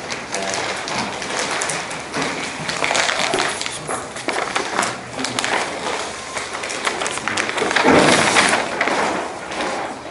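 Rustling and tapping of papers and people moving about at a meeting table, with one louder thump about eight seconds in.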